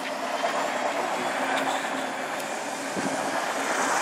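City bus pulling away from the stop, its engine running under acceleration with a steady low hum beneath road noise.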